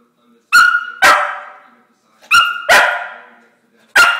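Scottish Terrier barking sharply five times, the barks coming in pairs, to count out an answer.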